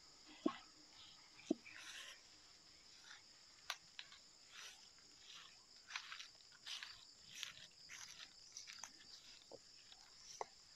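Night insects chirring in steady high-pitched bands. Over them come soft irregular footsteps and rustling, and two sharp clicks about half a second and a second and a half in.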